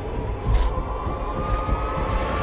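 Trailer sound design under a cut: a low rumble with a thin tone that rises slowly in pitch.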